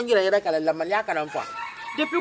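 A rooster crowing in the background: one long, held call that starts a little past halfway in and is still going at the end, over a woman talking.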